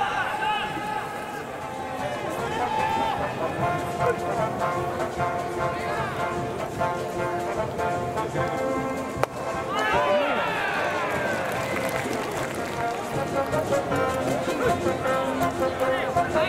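Ballpark cheering from the stands: held instrumental notes with many voices chanting along, swelling into a louder burst of shouting voices about ten seconds in. A single sharp knock sounds just after nine seconds.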